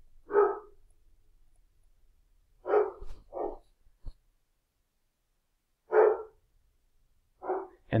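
A dog barking, five short single barks at irregular gaps, with a faint click about four seconds in.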